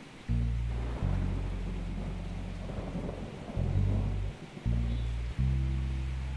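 Dramatic background score of low sustained bass notes that shift every second or so, with a steady hiss like rain beneath it.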